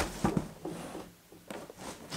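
Large cardboard shipping box being handled and turned in the hands: a few light knocks and scrapes of cardboard, one near the start and a couple more in the second half.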